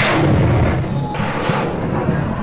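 Loud rushing noise of a ship-launched missile's rocket motor at launch, strongest at the start, with background music underneath.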